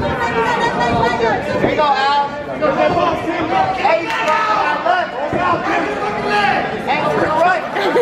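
Crowd of fight spectators talking and calling out over one another, several voices at once, in a large hall.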